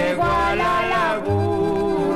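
Mexican corrido music playing from a 33 rpm vinyl LP on a turntable: a Chihuahua duet's recording, with a low bass note coming in on a steady beat under wavering melody lines.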